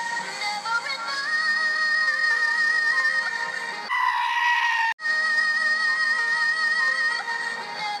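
A female vocal group holds a long, high sung note with vibrato over backing music. About four seconds in, a sheep's loud bleat is cut in for about a second, then the held note comes back.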